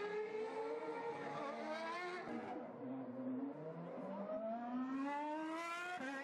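2013 Formula 1 cars' V8 engines running at high revs as they pass, several at once: the pitch falls over the first two seconds, then climbs steadily as they accelerate.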